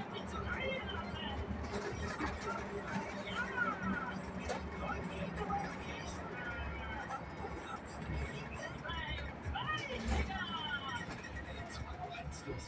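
A radio playing faintly inside a moving bus, music with a voice, over the steady low drone of the bus engine.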